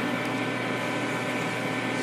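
Steady hiss with a faint, even electrical hum of several fixed tones: the background noise of a lo-fi interview recording, with no other event.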